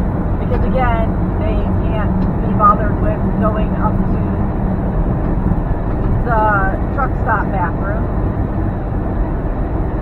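Steady low drone of a semi-truck's engine and road noise inside the cab at highway speed, with a woman's voice talking in short stretches over it.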